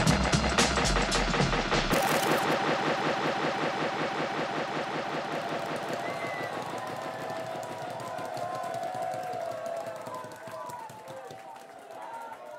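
A drum and bass track playing over the DJ mix. The deep bass drops out about two seconds in, leaving a fast rolling rhythm and vocal-like lines that slowly fade away.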